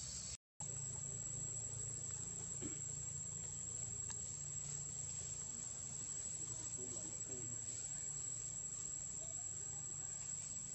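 Steady high-pitched insect drone from forest crickets or cicadas, over a low steady hum. The sound cuts out completely for a moment about half a second in.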